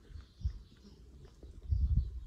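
Close-up handling noise as a young goat nuzzles and nibbles at hair right against the microphone: dull thumps and rustling, with one thump about half a second in and a louder cluster near the end.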